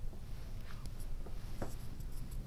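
Quiet small-room tone: a low steady hum with a few faint clicks.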